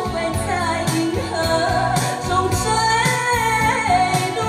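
A woman singing a slow Mandarin pop ballad live into a microphone over a backing track with a steady beat.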